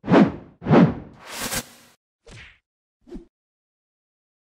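Motion-graphics sound effects for an animated title: two quick swooping whooshes with hits in the first second, a longer hissing sweep just after, then two small soft knocks, the last about three seconds in.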